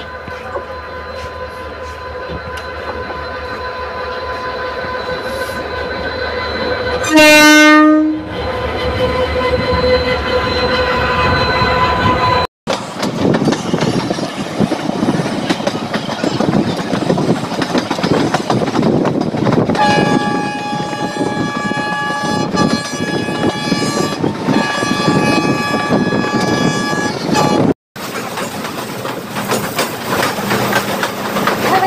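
Indian Railways diesel locomotive approaching with its engine growing louder, sounding its horn once for about a second, the loudest moment. After a sudden cut comes the rumble and clatter of a moving train heard from on board, with a steady high tone that comes in twice in the last third.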